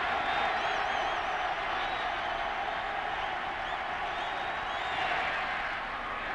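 Large football-stadium crowd making a steady din, with faint high whistles and whoops above it, swelling slightly about five seconds in.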